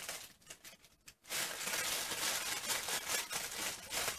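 Plastic packaging crinkling and rustling as it is handled and opened, a dense crackle that starts about a second in after a few faint clicks.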